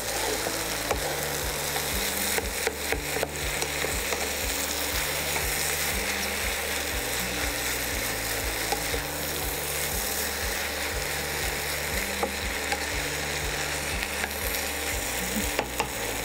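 Mushrooms, capsicum and masala sizzling as they fry in a non-stick pan, with a wooden spatula stirring and scraping through them. A low hum pulses on and off steadily underneath.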